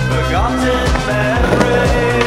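Soundtrack music: a song with a steady drum beat, deep bass and held synth notes, with a rising gliding line about a third of a second in.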